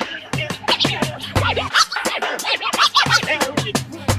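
Instrumental break of a late-1980s hip hop track: turntable scratching over a drum beat with a deep kick drum, no rapping.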